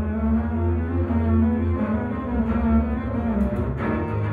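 Two double basses playing a contemporary classical duet, holding sustained low bowed notes, with a few sharp strokes near the end.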